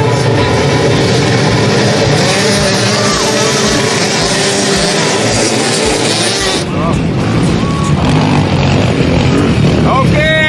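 A field of enduro motorcycle engines running together, a dense, loud mass of engine noise that thins about two-thirds of the way through.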